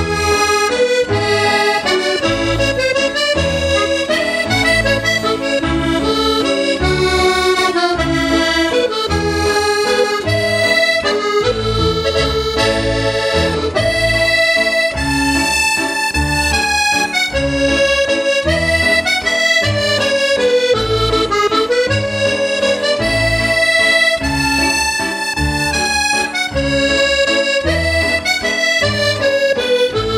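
Button accordion playing a slow waltz solo: a melody of held notes over a steady, regular pulse of bass and chords.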